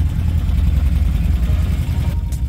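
Quad bike (ATV) engines idling in a steady low rumble.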